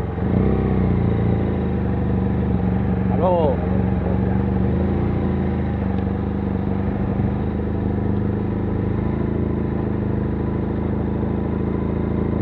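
Motorcycle engine running steadily at low speed while riding, heard close from the rider's helmet camera. A short voice-like call rises and falls about three seconds in.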